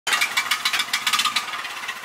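Small portable generator engine pull-started by its recoil cord and catching, running with a fast, even train of beats, about seven or eight a second, that eases toward the end.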